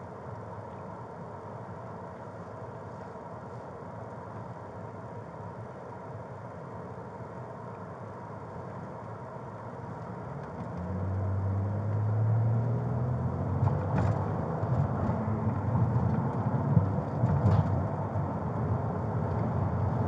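Car engine and road noise heard from inside the cabin as the car drives. About ten seconds in, the engine note rises and gets louder as the car speeds up, with a couple of faint clicks later on.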